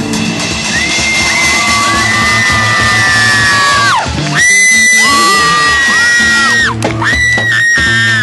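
Live rock band with electric guitar and drums playing on, under long, high held yells or sung notes. Each is held for a couple of seconds and drops off in pitch at its end, three times over.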